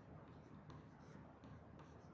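Faint scratching of a pen writing on a board, a series of short strokes.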